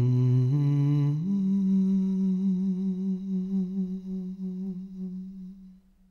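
A man humming wordlessly, stepping up in pitch twice and then holding one long note that wavers slightly and fades out near the end.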